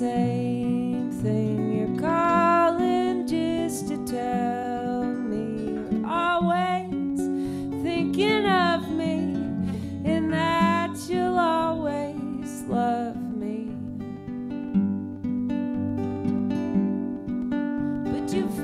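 Two acoustic guitars playing a slow song together while a woman sings; her voice stops about thirteen seconds in, leaving the guitars alone.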